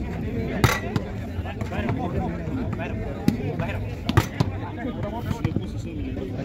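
Outdoor crowd of spectators talking and calling, with a few sharp smacks of a volleyball being struck during a rally, the loudest about a second in and again about four seconds in.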